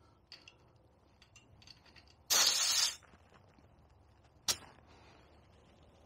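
A few faint clicks, then a short burst of air hissing from a bicycle tyre valve as a dial pressure gauge is pressed on to take a reading, and a single sharp click about two seconds later.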